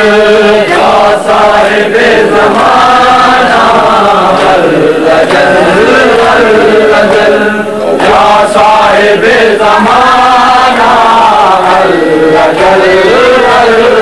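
Voices chanting an Urdu devotional poem addressed to the Imam of the Age in a slow melodic line that rises and falls, held without breaks.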